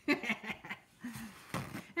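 A woman laughing in a few short chuckles, with a couple of softer vocal sounds in the second half.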